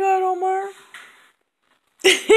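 A pug giving one long whining howl that sinks slightly in pitch and dies away about a second in.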